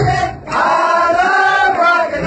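A dance track's bass and beat drop out briefly. In the break many voices sing together, and the beat comes back in near the end.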